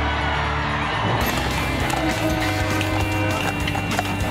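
Background music with held, steady notes, at an even level throughout.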